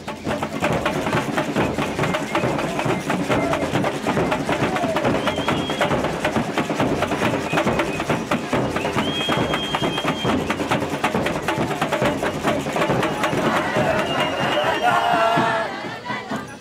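Carnival drums (tambourins) beating a fast, dense rhythm, mixed with the voices of a crowd. Two brief high held notes sound in the middle, and the voices grow louder near the end.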